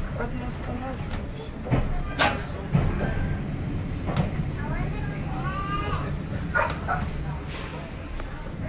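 Steady low rumble of a heritage railway carriage running slowly along a station platform, heard from inside the carriage, with a few sharp knocks.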